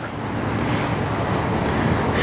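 Steady rushing noise of road traffic going by.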